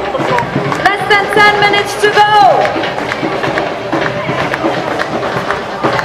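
Music and a voice over loudspeakers, the voice holding long notes about a second in and ending in a falling slide, over crowd noise at a race start.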